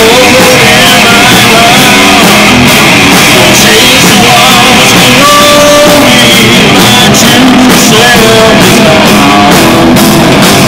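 Live rock band playing very loud: electric guitar and drum kit under a vocalist singing into a microphone.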